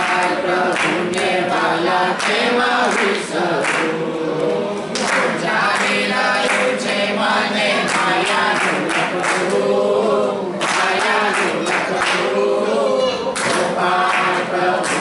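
A group of women singing a devotional song (bhajan) together, with hand-clapping along to the song.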